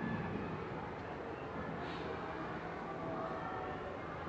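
Steady low background rumble with no speech, and one faint tick about two seconds in.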